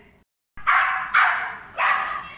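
A dog barking three times in quick succession, about half a second apart, loud and sharp, after a brief dead drop-out of the sound.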